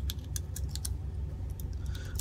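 .380 ACP cartridges being pressed one by one into a Ruger LCP II pistol magazine: a run of small, sharp, irregular metallic clicks as each round snaps past the feed lips, over a low steady hum.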